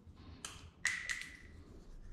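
A light tap as the thin sheet-steel patch panel knocks against the car's body metal, with a short metallic ring that dies away within a second. A fainter click comes just before it.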